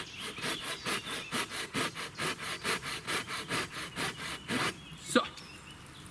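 Silky Gomboy folding pruning saw cutting through a standing hornbeam trunk, a very hard wood, in rapid even strokes of about four a second. The sawing stops a little before the end.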